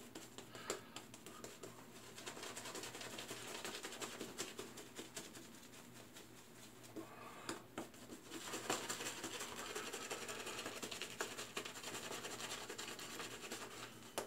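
Faint, fine crackling swishes of a shaving brush working soap lather over the face and stubble, in two stretches with a short lull about halfway.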